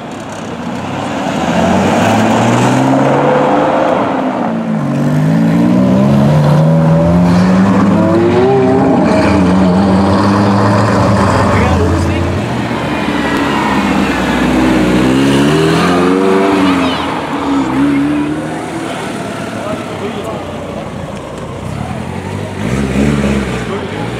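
Sports car engines pulling away one after another, revving hard with the pitch climbing through repeated rising sweeps. The longest, loudest runs come early, likely the Ferrari 612 Scaglietti's V12. A shorter rev burst comes near the end.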